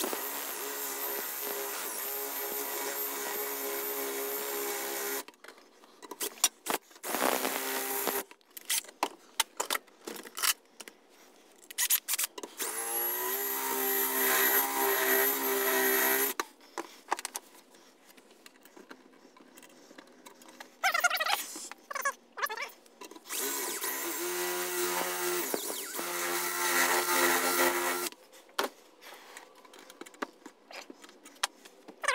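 Electric drill drilling out the triangular security screws of a space heater's sheet-metal case. It runs in three long bursts of a few seconds each, with short bursts and clicks in between, and speeds up with a rising whine at the start of the middle run.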